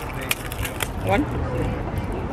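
Flaky pastry crust crackling as it is torn apart by hand: a few short, crisp crackles in the first second, followed by a single spoken word.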